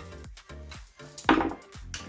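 Background music, with one loud knock about a second in: a screwdriver set down on a wooden workbench.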